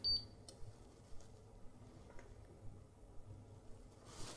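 Siglent SDS1202X-E oscilloscope giving a short high beep right at the start, as its volts/div knob hits its limit. A few faint ticks follow as its control knobs are turned.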